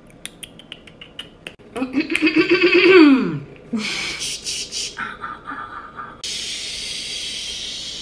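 A woman making sound effects with her mouth. First comes a quick run of tongue clicks and a warbling squeal that drops away in pitch, imitating a squirrel. Then a short noisy burst and a pulsing buzz imitate a car starting, and from about six seconds a long steady 'shhh' hiss imitates a waterfall.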